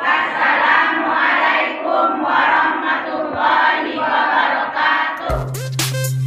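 A group of women's voices chanting together in unison, in short phrases of about a second each. About five seconds in, the chanting cuts off into a whoosh and the start of beat-driven outro music with a deep bass note.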